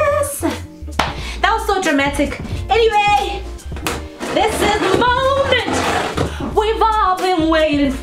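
A woman singing playfully, her voice gliding up and down, over background music with a low bass line.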